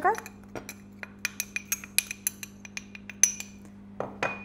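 Light ceramic-on-glass clinks as icing sugar is tipped and knocked out of a white ramekin into a small glass bowl: a quick, uneven run of about a dozen ringing ticks, the loudest near the end.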